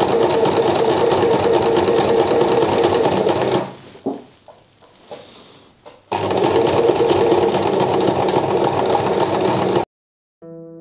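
Domestic Millepunti sewing machine stitching piping onto heavy upholstery fabric, running steadily. A little over three seconds in it stops for about two and a half seconds, then runs again until it cuts off abruptly just before the end.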